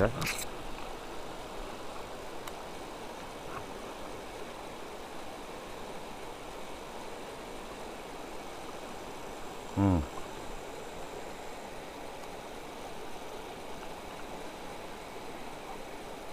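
Steady rushing of a fast-flowing river current over rocks.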